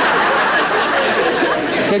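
Several people talking over one another at once: a dense, steady chatter of mixed voices.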